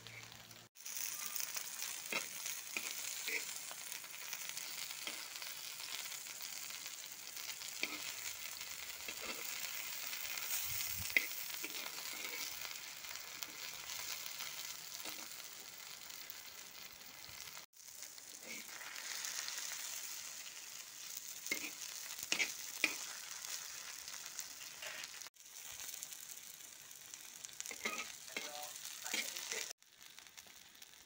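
Masala-coated fish pieces shallow-frying in oil on a flat iron griddle: a steady, high sizzle with scattered small pops and spits of oil. The sizzle breaks off briefly a few times.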